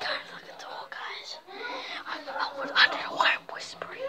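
A child whispering close to the microphone, getting louder about three seconds in.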